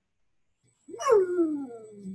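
A dog vocalising once, about a second in: one drawn-out call that starts high and slides steadily down in pitch over about a second.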